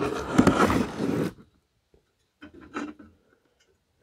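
Rustling and scraping as a cast iron barrel-stove door plate is handled and lifted in its cardboard packaging, for about a second and a half, then a pause and a few fainter handling sounds.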